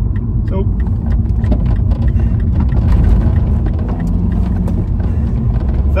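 Steady low road and engine rumble heard inside the cabin of a Mini Paceman being driven.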